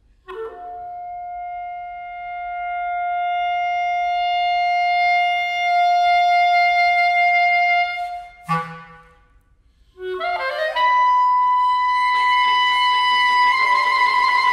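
B-flat clarinet playing a quick flourish and then one long high held note that swells in loudness, breaking off with a short accent. After a brief pause, another flourish leads into a higher held note; near the end the viola joins with bowed sustained tone, the two pitches wavering against each other.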